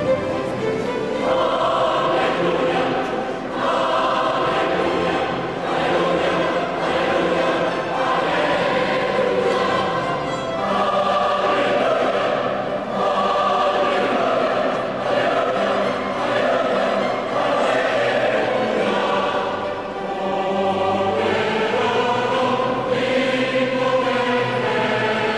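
Choir singing with orchestral accompaniment, in phrases of sustained chords a few seconds long.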